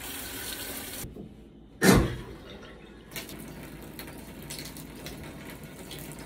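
Water running steadily from a tap into a sink, just after the valve was opened to refill plumbing that had been drained, with a short break about a second in.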